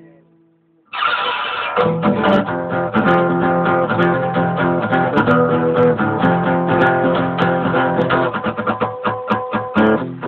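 Acoustic guitar: a ringing chord dies away into a pause of about a second, then the playing starts again abruptly with chords struck in a steady rhythm.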